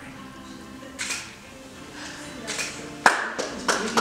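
Soft music, then hand clapping that starts suddenly about three seconds in and goes on as irregular claps.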